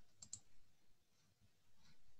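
Faint clicks of a computer being worked: a quick double click a quarter of a second in, and another faint click near the end.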